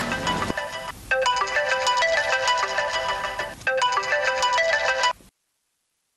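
A mobile phone ringtone playing a short electronic melody, an incoming call ringing. The phrase sounds about twice before cutting off suddenly about five seconds in.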